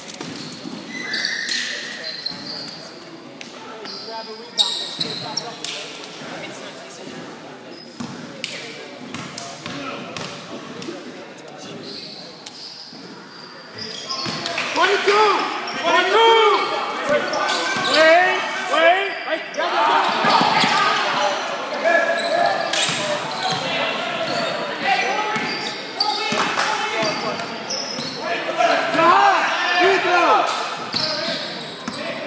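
Basketball game in a gymnasium with a large hall's echo: a basketball bouncing and sneakers squeaking on the hardwood floor. From about halfway through, players and spectators are shouting.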